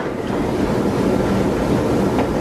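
A steady rushing noise with no pitch, about as loud as the speech around it, like wind or static on a microphone.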